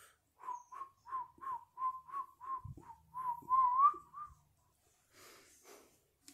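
A person whistling a quick run of short notes, about three a second, all near one pitch, ending in a slide upward. A soft low thump comes about halfway through.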